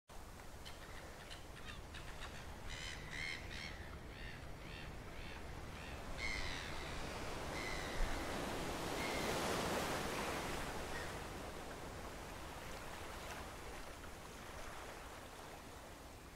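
Seagulls calling: a run of short repeated calls that thin out to a few longer ones, over a soft wash of sea that swells and fades around the middle.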